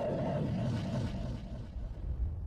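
Title-sequence sound design: a deep, dense rumble that eases off near the end.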